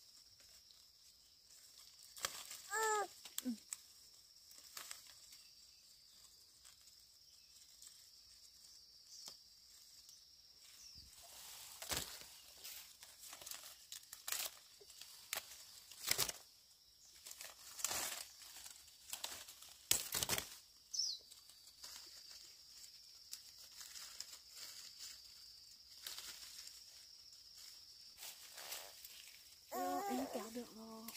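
Hand-picking small oranges from a citrus tree: leaves rustling, stems snapping and fruit dropping into a woven basket, heard as scattered short clicks and crackles. A brief falling call about three seconds in, and a faint steady high whine underneath.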